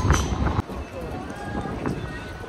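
City street ambience. A loud low rumble of street and traffic noise cuts off abruptly about half a second in, giving way to quieter pedestrian-street sound with passers-by talking.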